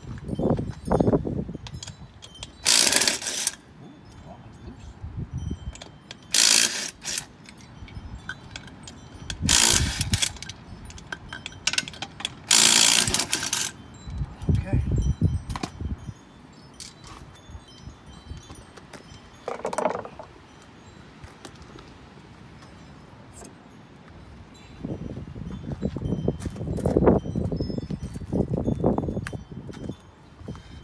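Lug nuts on a golf cart's front wheel being undone with a socket wrench: four short bursts of wrench noise, one per nut, a few seconds apart. Duller knocks and handling noise follow as the wheel is pulled off the hub.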